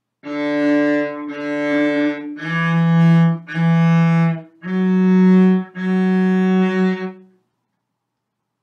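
Cello bowed on the D string, playing six notes of about a second each in rising pairs: D, D, E, E, F-sharp, F-sharp.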